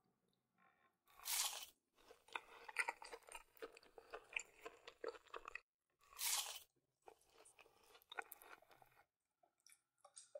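Close-up chewing of McDonald's chicken nuggets: crunching with wet mouth clicks, in two spells. Each spell opens with a short loud burst, about a second in and again about six seconds in.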